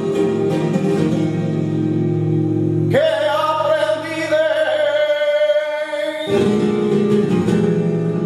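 Male flamenco singer singing a taranta over guitar accompaniment, holding one long, wavering, ornamented line from about three seconds in until about six seconds, with the guitar alone before and after it.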